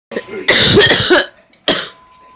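A person coughing hard after a dab hit of inhaled cannabis concentrate. A loud coughing fit lasts under a second, then one more short cough comes near the end.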